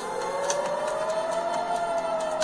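Air-raid warning siren wailing, its pitch rising slowly and starting to fall near the end, with a brief click about half a second in.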